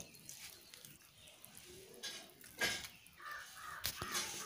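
Wet squishing of a hand kneading rice flour into water in a metal pan, breaking up lumps. A few short, harsh, louder sounds stand out between about two and three and a half seconds in.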